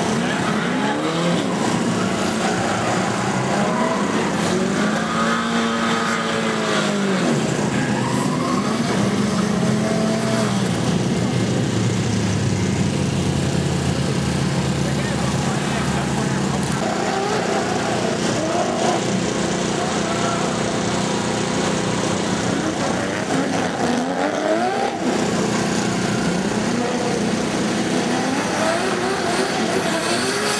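Drift cars' engines revving hard, the pitch sweeping up and down again and again as the cars slide through the course, with tyres squealing under wheelspin.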